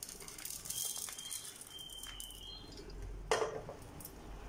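Roasted dry red chillies, garlic cloves and coriander and cumin seeds sliding and pattering out of a nonstick frying pan onto a ceramic plate, with one louder knock a little after three seconds.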